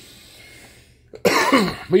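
A man coughs once, a short harsh cough a little past a second in, after a second of faint hiss.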